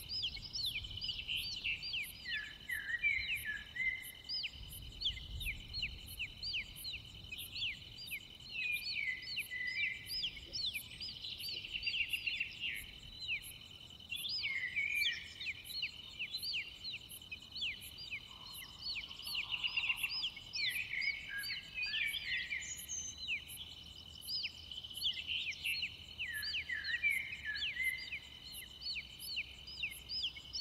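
Nature ambience of crickets trilling steadily and birds chirping in quick, overlapping calls. A very high insect-like pulse ticks a little faster than once a second above them.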